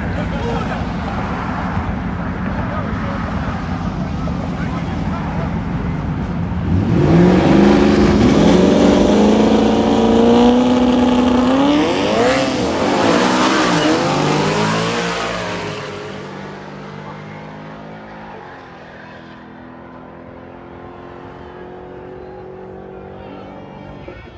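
Two Mustang street-race cars, one of them turbocharged, running at the start line, then revving hard about seven seconds in: engine pitch climbs and is held high for several seconds, swings up and down once more, then falls away to a fainter, steady engine drone.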